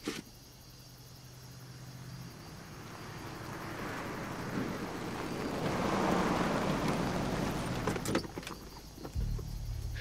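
A car approaches: its noise grows steadily louder to a peak about six seconds in, then eases off. A sharp click comes near the eight-second mark, and a low steady hum starts about a second later.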